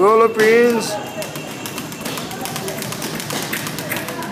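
Speed bag being punched, the bag rattling against its rebound platform in a fast, continuous run of taps.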